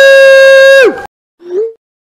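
A loud, held cheer from a voice on one steady pitch that dips and cuts off abruptly about a second in, followed by a short rising pop-like sound effect.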